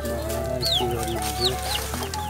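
Chicks peeping: short high chirps that fall in pitch, about five in two seconds, over background music with a steady bass.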